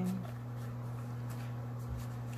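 Steady low electrical hum with a few faint, soft rustles and clicks from paper and plastic being handled.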